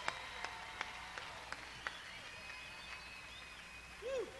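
Concert audience between songs, faint: a few handclaps in a steady rhythm of about three a second, then a thin held whistle near the middle.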